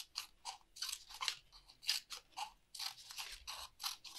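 Scissors snipping short cuts into the rim of a paper plate, a quick series of crisp snips about three a second.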